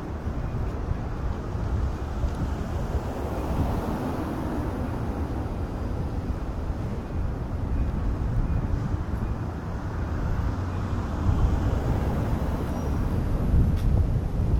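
Outdoor city street ambience: a steady low rumble with a lighter hiss above it, growing a little louder near the end.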